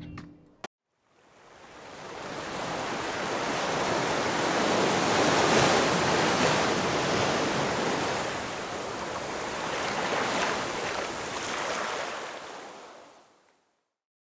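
Rushing, surf-like sound of waves washing. It swells up about a second in, rises and falls a few times, and fades out shortly before the end.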